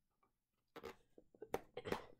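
Fingernails picking and scratching at the edge of a cardboard box, a few short quiet scratches and clicks after a near-silent first moment.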